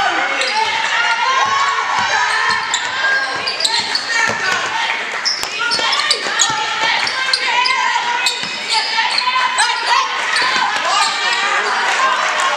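Basketball dribbled and bouncing on a hardwood gym floor during live play, with many short thuds, under constant shouting and calling from players and spectators, echoing in a large gymnasium.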